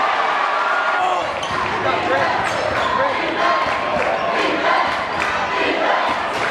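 Basketball being dribbled on a hardwood gym floor under the steady noise of a crowd talking and shouting.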